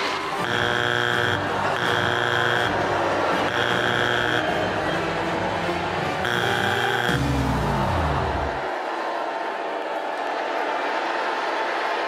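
Talent-show judges' buzzers sounding four times, each a harsh buzz just under a second long, followed by a falling tone that drops away about seven seconds in, over steady background noise.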